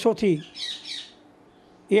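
A man's voice speaking Gujarati, with a short hiss about half a second in and a pause of about a second before he speaks again near the end.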